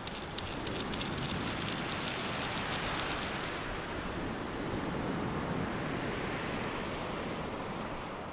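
Surf washing on a beach with wind, a steady rushing noise. During the first three or so seconds a rapid run of light ticks sits over it.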